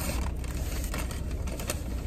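Paper takeout bag being opened and handled, rustling and crinkling with many small irregular crackles.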